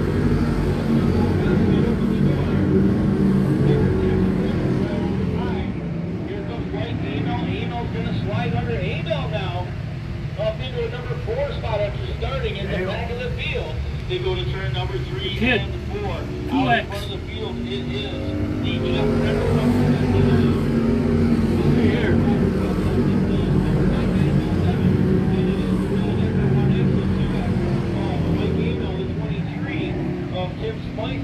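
Dirt-track race cars running laps together, their engines a steady drone that swells and eases as the field goes around. Voices talk over it in the middle, and there is one brief sharp knock about seventeen seconds in.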